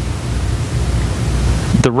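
A steady rushing noise with a low rumble underneath, swelling gradually until a man's voice comes back near the end.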